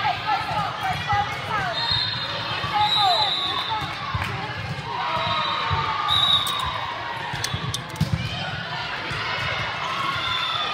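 Volleyball game sounds in a reverberant gym: a ball bouncing and thudding, and sneakers squeaking on the hardwood court in short chirps, over steady spectator chatter.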